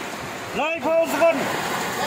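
A steady hiss of rain, with a person's voice heard briefly from about half a second in, lasting under a second.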